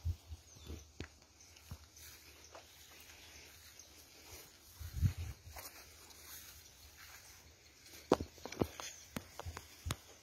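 Footsteps of several people walking through grass and brush along an overgrown path, with scattered rustles and light knocks. A low bump comes about five seconds in, and a cluster of sharper clicks near the end.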